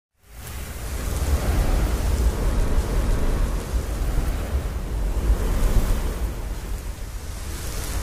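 Logo-reveal sound effect: a steady rush of noise with a heavy deep bass, fading in over the first second and then holding.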